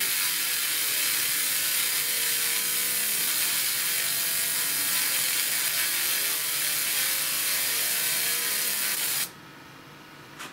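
Pulsed 20 W MOPA fiber laser marking granite: a steady, high-pitched crackling hiss as the beam ablates the stone surface, cutting off suddenly near the end when the marking finishes.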